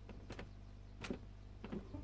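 A few faint, short clicks, spread through the moment, over a low steady hum.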